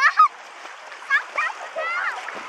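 Children's short, high-pitched squeals and calls, a few at the start, two around the middle and a rising one near the end, over steady splashing of sea water as they wade and play.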